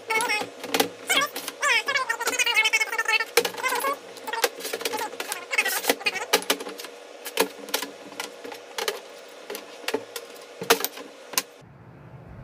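Repeated metallic clicks and clatter of Honda K20A3 rocker arms being slid onto their rocker shafts and set down, with scraping, ringing tones in between. It cuts off abruptly near the end.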